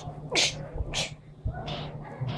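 A child's breathy vocal noises: two short, sharp hissing bursts about half a second apart, the first sliding down in pitch.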